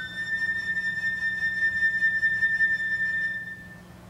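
Solo concert flute holding one long high note, unaccompanied, for about three and a half seconds at the top of a rising run, then stopping.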